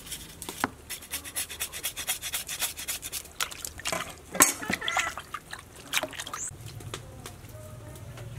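A cleaver scraping a raw cow tongue in quick repeated strokes, then hands rubbing the meat in a plastic basin. One sharp knock about four seconds in is the loudest sound.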